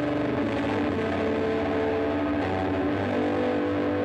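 Electric guitar, a Coodercaster with Goldfoil and Filtertron pickups, played with tweed-style distortion: overdrive pedal into an amp modeller with a tweed Deluxe cabinet response, plus tape delay. Sustained distorted notes and chords ring out, moving to new notes about every second.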